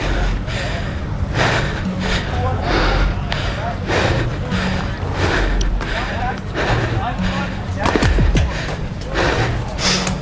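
Music with a steady beat and a bass line, with indistinct voices mixed in.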